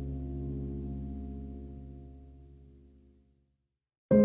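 A gong-like ringing tone of several steady pitches, struck just before and slowly dying away, fading out about three seconds in.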